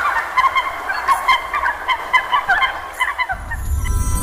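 Rapid chattering bird calls, many short chirps a second, stop a little after three seconds in as background music starts.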